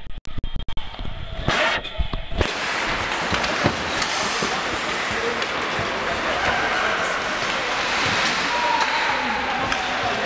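Ice hockey game ambience in a rink: a steady, loud din of voices and play. The first couple of seconds are choppy, with brief dropouts.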